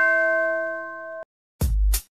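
A bell-like synthesized chime from a TV intro jingle rings and fades, then cuts off abruptly about a second in. After a brief silence, a loud deep booming hit with a hiss starts near the end.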